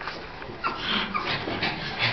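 Pug panting in quick, noisy breaths, starting about half a second in.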